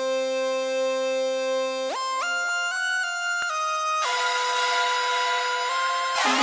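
Electronic music intro on a synthesizer: one bright, buzzy note held for about two seconds, then a quick run of notes stepping up and back down, then another held note.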